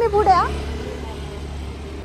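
A woman's voice trails off in the first half second, then a steady low rumble of road traffic.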